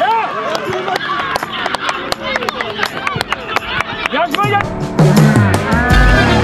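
Excited shouting voices over a goal, mixed with sharp percussive hits. About four and a half seconds in, edited-in music with a heavy bass beat comes in loudly.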